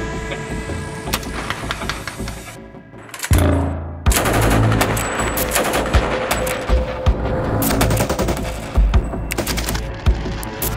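Background music, then a heavy low hit a little over three seconds in. From about four seconds in, bursts of fire from a belt-fed machine gun run on over the music.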